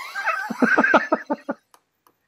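Hearty laughter: a run of quick ha-ha pulses that fade out about a second and a half in.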